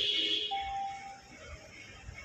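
ATM electronic beeps as a button is pressed and the screen moves on: a high beep is still sounding for the first half second, then a single lower tone follows for just under a second.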